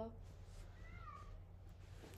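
A faint, short call that glides up and then down in pitch about a second in, over a low steady hum.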